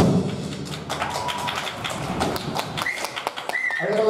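Scattered, irregular hand clapping from a small audience, just after a big band's final chord cuts off.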